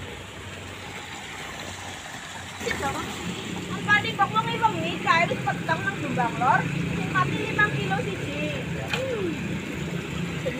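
Indistinct voices talking over a steady low motor hum that sets in about three seconds in.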